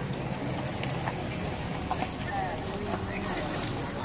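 Indistinct chatter of people talking nearby over outdoor background noise, with a steady low hum underneath.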